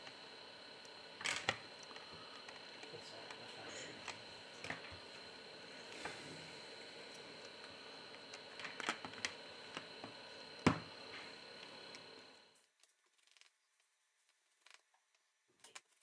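A plastic opening pick working around the seam of an LG K50s phone's back cover, with faint scratching and scattered small clicks and snaps as the cover's clips let go, the sharpest about eleven seconds in. The sound cuts off to silence about three seconds before the end.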